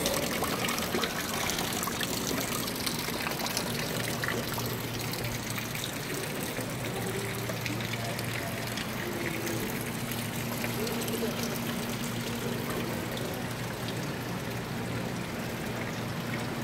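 Steady trickle of water falling from a carved stone wall fountain's spout into its basin. A low, steady hum joins about four seconds in.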